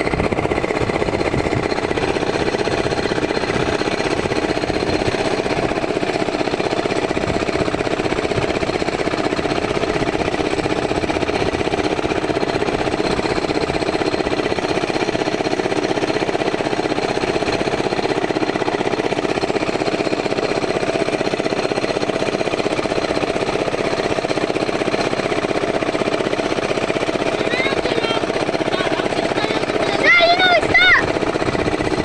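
A boat's engine running steadily and loudly, with an unchanging level throughout.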